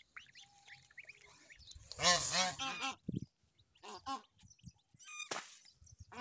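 Domestic white geese honking: a loud run of calls about two seconds in, a couple more about four seconds in, and another near the end, with faint high peeping from goslings early on and a short noisy burst just after five seconds.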